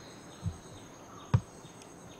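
Insects chirring steadily at a high pitch, with a soft low thump about half a second in and a sharper, louder knock a little past the middle.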